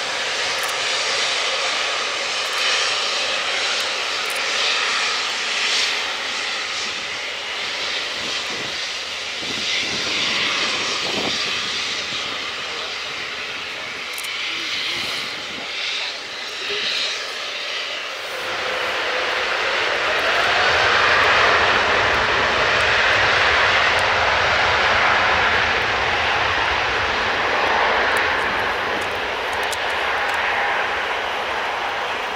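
Airbus A350-900's Rolls-Royce Trent XWB turbofans running at low taxi thrust, then spooling up about two-thirds of the way through to takeoff power. The sound grows louder, with more low rumble and a slight rising whine, and stays up.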